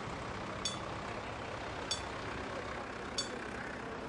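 Ferguson TE20 tractor engine running steadily while pulling a Ferguson bell-dropper potato planter, with the dropper's wheel-driven bell giving a short metallic ping three times, about every 1.3 seconds. Each ring signals the men on the planter to drop a seed potato down the tube.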